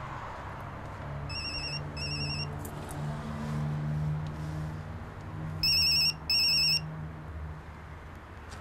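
Mobile phone ringtone ringing for an incoming call: a faint pair of short electronic warbling tones about a second in, then a much louder pair near the end.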